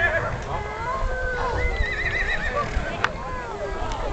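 A horse whinnying with a high, quavering call about two seconds in, over the steady chatter of a crowd's voices.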